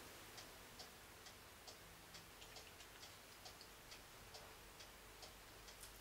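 Near silence: quiet room tone with faint, regular ticking, about two ticks a second.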